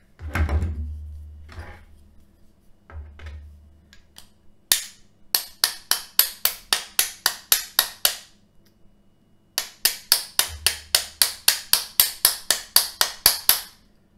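Hammer tapping on the seized cutting-wheel head of a manual can opener to knock the wheel loose: two runs of quick light metallic blows, about four a second, with a short pause between. The wheel stays seized. Some handling knocks come before the blows.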